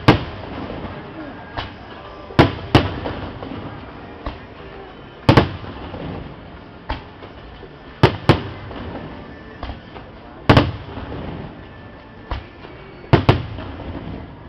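Aerial fireworks shells going off: loud bangs every couple of seconds, several in quick pairs, each trailing off in echo.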